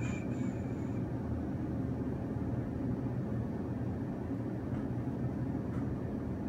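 Steady low outdoor rumble, a constant background hum. Faint thin high-pitched tones fade out about a second in.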